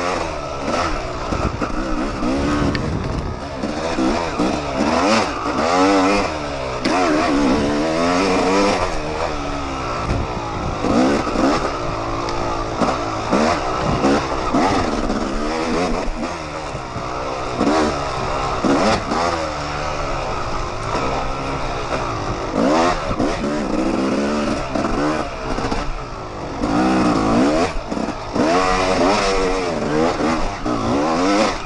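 Yamaha YZ250 two-stroke dirt bike engine revving hard and falling off again and again as the rider works the throttle and gears along a tight woods trail, with chassis rattles over the bumps.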